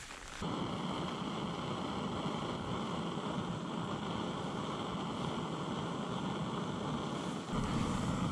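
Gas canister stove burner running steadily at full flame under a small metal tin of cotton being charred into char cloth. The steady sound starts suddenly about half a second in and drops away just before the end.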